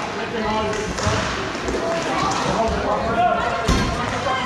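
Inline hockey game in an echoing hall: players' and bench voices calling out over scattered knocks of sticks and puck on the rink floor, with a sharp knock near the end.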